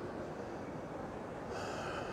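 Steady ambience of an indoor shopping-mall corridor. Near the end comes a short, sharp breath or sniff close to the microphone.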